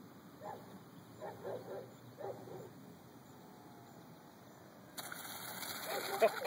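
A German Shepherd barking several times in the first couple of seconds. About five seconds in, a sudden broad rush of noise begins.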